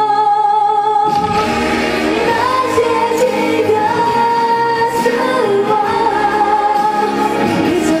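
A woman singing a Mandarin pop song with band backing: a held chord gives way about a second in to the fuller band and her sung melody.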